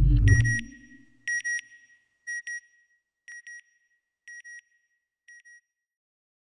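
Sound-design sting for an animated title: a deep rumbling hit, then a pair of short high electronic beeps that repeats about once a second, six times, fading away like an echo.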